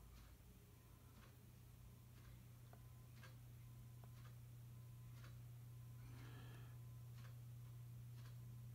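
Near silence: a steady low hum with faint ticks about once a second.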